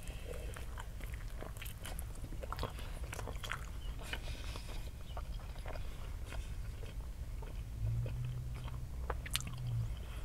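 A person biting into and chewing a Burger King ham, egg and cheese breakfast sandwich close to the microphone: many small mouth clicks and crunches over a steady low rumble.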